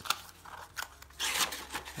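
Handling of a cardboard tube box and its paper insert: sharp light knocks and clicks of cardboard, with a louder paper rustle a little past halfway through.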